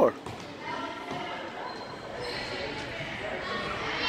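A basketball bouncing on the hardwood floor of a gymnasium during play, under a steady background of distant voices.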